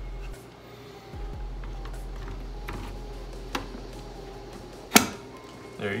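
A GTX 1060 graphics card being pushed into a motherboard's PCIe slot. A few light knocks of handling are followed by one sharp click about five seconds in as it snaps into place, over a faint steady hum.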